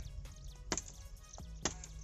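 Two sharp knocks about a second apart, part of a steady series of strikes, over background music.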